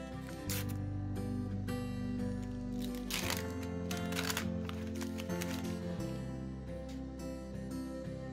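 Background music, with a few short crinkles and tears of a paper trading-card pack wrapper being ripped open, the main ones about three to four seconds in.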